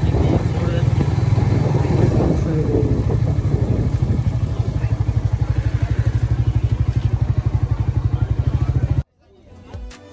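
A Suzuki GSX-R150's single-cylinder four-stroke engine running at low speed as the bike rolls slowly, then settling into an even idle pulse, with voices in the background early on. The sound cuts off abruptly about nine seconds in, and faint music starts up near the end.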